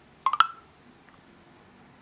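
A quick electronic beep from the phone's speaker about a third of a second in, a few clicks ending in a short tone, as the TellMe voice app processes a spoken command. Faint room tone follows.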